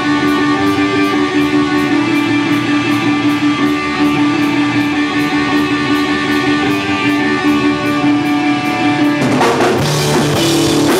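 Live punk rock band: distorted electric guitars hold a steady, ringing chord, then about nine seconds in the drums and the rest of the band come in loud as the song gets going.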